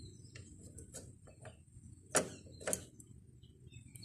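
Light metallic clicks of a wrench working the bolt on a motorcycle kick-start lever, with two louder sharp clicks about half a second apart a little past the middle.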